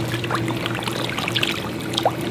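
A crowd of koi splashing and slurping at the pond surface around a hand held in the water, a busy crackle of small splashes over a steady low hum.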